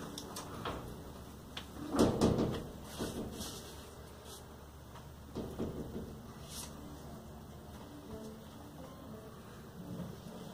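Handling noises at a workbench: a louder clatter about two seconds in, then faint knocks and rubbing as a cloth with Tru Oil is worked along a wooden guitar neck.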